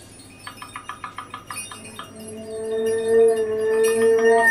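Free-improvised percussion on the drum kit: a rapid, irregular run of light metallic clinks and chimes for about a second and a half. A clarinet then enters with a long held note that swells.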